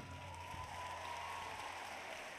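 Faint audience applause after the final notes of a song, with a thin held tone dying away about two-thirds of the way through.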